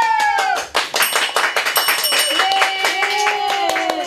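Two women clapping their hands rapidly and excitedly, with high squeals of delight: one falling cry at the start and a long held cry over the second half.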